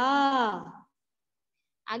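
Speech only: a woman's voice holds out one long syllable for the first second or so. Silence follows, and she starts speaking again near the end.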